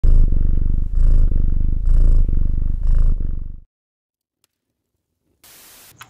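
A cat purring loudly, four slow breath cycles over about three and a half seconds, then it stops. A short burst of hiss comes just before the end.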